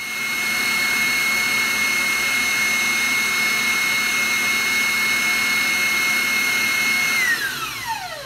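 Electric stand mixer running steadily, whipping marshmallow mixture, with a high, even motor whine. Near the end the whine glides down in pitch and fades as the mixer is switched off and winds down.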